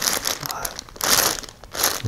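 Clear plastic zip-top bag crinkling as it is handled, in several short bursts.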